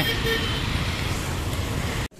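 City street traffic: a steady wash of engine and tyre noise from passing vehicles, with a short high horn toot near the start.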